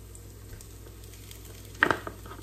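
Chili paste frying in oil in a nonstick pan with a low, steady sizzle while minced pork is scraped in with a wooden spatula. Near the end a lump of mince drops into the hot oil with a sudden loud burst.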